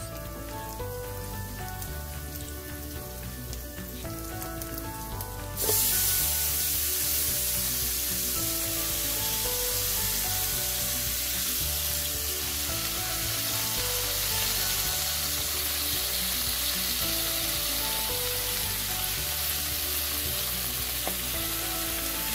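Hot oil sizzling in a frying pan under background music. About five seconds in, the sizzle jumps suddenly much louder as wet chopped bok choy leaves go into the oil, and it stays loud and even.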